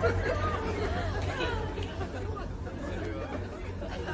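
Indistinct chatter of voices in the background over a steady low hum.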